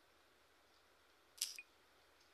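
Near silence with faint hiss, broken by one short, sharp click about one and a half seconds in.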